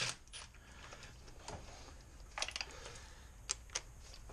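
A few faint, scattered metallic clicks and light knocks as a cordless impact wrench and its socket are handled on the engine's valve cover bolts: one about a second and a half in, more around the middle, and two near the end. The impact wrench is not heard running.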